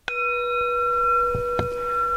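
Singing bowl struck once with a mallet, then ringing on with several steady overtones at an even level.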